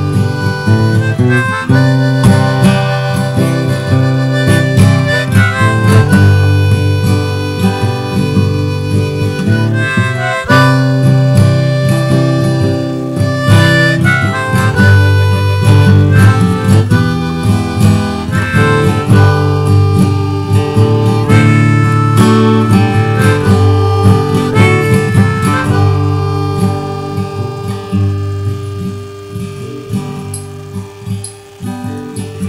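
Instrumental break of a song: harmonica playing a solo line of held notes over acoustic guitar, getting quieter near the end.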